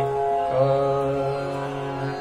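Male Hindustani classical vocal in raga Chandrakauns: after a brief pause the singer holds one long steady low note over a sustained drone accompaniment.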